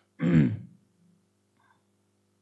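A man clearing his throat once, a short voiced sound falling in pitch.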